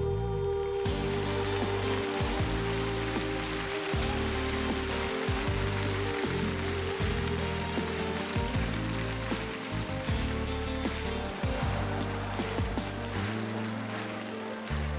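Live pop band music ending a song, with a long held note that stops about seven seconds in. An audience applauds over it, starting about a second in and running on.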